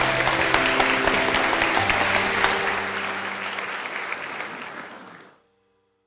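Audience applauding over closing music, the clapping and music fading out about five seconds in.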